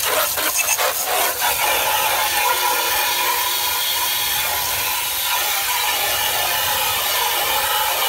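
Garden hose spray nozzle jetting water onto a plastic pond filter box to wash it clean: a steady hissing spray, with a few sharp spatters in the first second or so.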